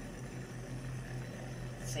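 Self-stirring travel mug's small battery motor running with a steady low hum as it mixes the coffee.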